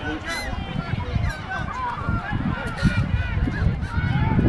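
Many high-pitched voices shouting and calling at once from players and spectators at a youth rugby match, with wind buffeting the phone microphone.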